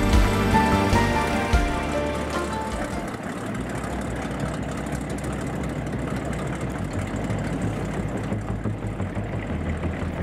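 Background music whose held notes die away over the first few seconds, then a steady low rumbling noise that fits a mahogany runabout's inboard engine running on the water.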